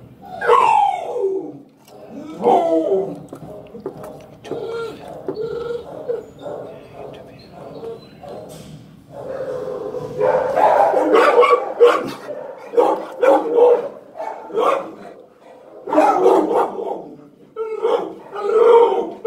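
A dog vocalizing close by: long cries that slide down in pitch near the start, then a run of shorter pitched calls that grow louder about ten seconds in.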